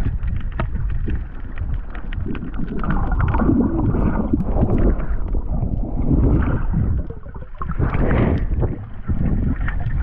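Muffled, uneven wind and water noise on the microphone, with scattered knocks and clicks and swelling gusts.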